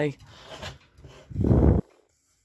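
A brief, muffled rush of handling noise about a second and a half in, as a hand takes hold of the lamp's metal reflector. The sound then cuts off abruptly.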